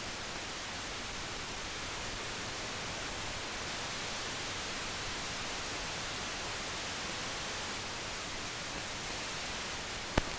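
Steady, even hiss with nothing else in it: the noise floor of a silent stretch of an old newsreel film soundtrack.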